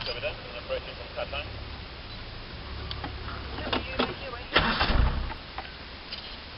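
Safari game-drive vehicle's engine running with a steady low hum, with a few scattered clicks and a loud, rumbling burst about four and a half seconds in.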